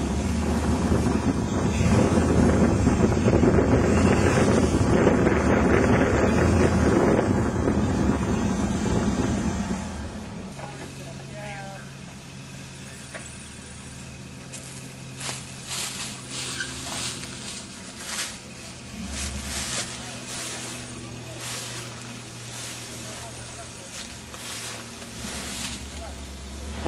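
Jeep Wrangler engine working as the Jeep crawls over a rock ledge, loud for about the first ten seconds, then dropping suddenly to a quieter steady low hum for the rest.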